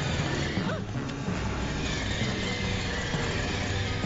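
Tense television score mixed with mechanical sound effects for a robotic spider bug: a steady low rumble with a short electronic chirp about a second in.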